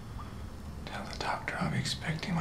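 A man whispering close to the ear, starting about a second in, over a low steady hum.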